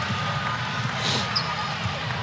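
Basketball game sounds in an arena: a ball dribbling on the hardwood court over steady crowd noise, with a short high squeak about a second in.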